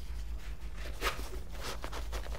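Faint rustling and soft scraping of a metal airsoft pistol magazine being pushed into a nylon magazine slot of a padded pistol bag, with the clearest scrape about a second in.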